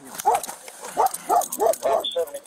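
A dog barking repeatedly: about six short barks in quick succession.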